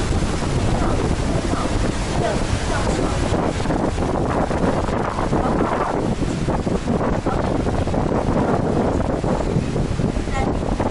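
Qiantang River tidal bore breaking along a river embankment: a steady rush of churning water, with wind buffeting the microphone.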